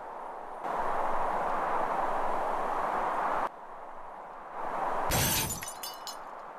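Cartoon sound effects of a fall into a bin of broken glass. A steady rushing noise lasts about three seconds and cuts off suddenly. Near the end come a heavy thud and a crash of shattering glass, trailing off in tinkling shards.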